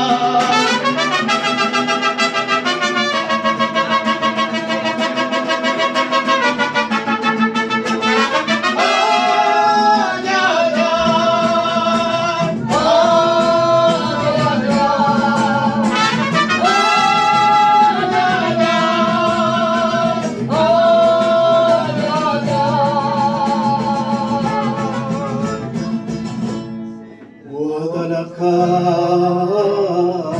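Mariachi band playing: strummed guitars under a melody with vibrato. The music drops away briefly near the end, then comes back in.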